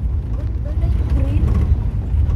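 Steady low engine and road rumble of a moving vehicle heard from inside its cabin, with faint talking over it.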